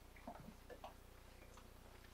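Near silence: room tone with a low steady hum and a few faint, irregular ticks.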